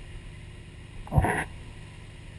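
A quick sharp inhale, one short loud burst a little past halfway, over the steady low drone of a boat's engine.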